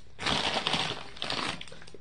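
A packaging bag crinkling and rustling as it is handled close by, a crackly burst of about a second and a half that stops near the end.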